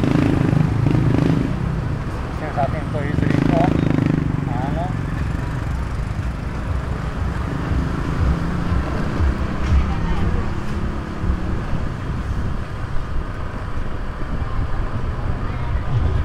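Motorcycle and car traffic heard from a moving scooter: a steady low engine and road rumble, with voices from the street, loudest in the first few seconds.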